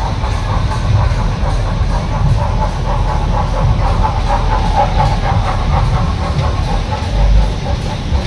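Mechanical rumble and clatter of a funfair children's roundabout turning, within the general noise of the fair, swelling into a louder rumble about seven seconds in.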